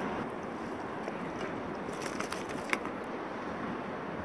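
A few light clicks and knocks about halfway through, over a steady hiss: handling noise as a landed Australian salmon is taken out of a landing net on a kayak.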